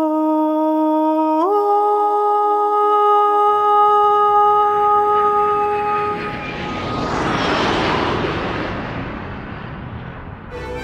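A single steady sustained musical note steps up in pitch about a second and a half in and fades out around six seconds. Then a swelling whoosh of noise rises and falls, loudest about eight seconds in.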